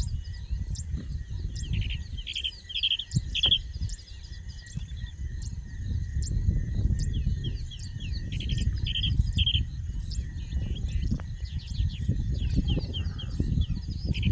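Several wild birds chirping and calling, with short bright song phrases repeated a few times, over a steady thin high tone. An irregular low rumble carries the most energy throughout.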